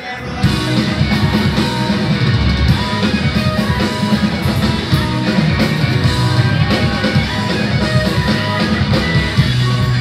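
Punk rock band playing live: distorted electric guitars, bass and drums at full volume. The band comes back in loud about half a second in, after a brief drop.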